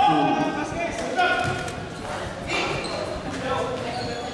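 Voices calling out on a basketball court, several separate shouts, with a basketball being dribbled.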